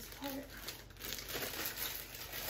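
Clear plastic packaging bag crinkling as it is handled.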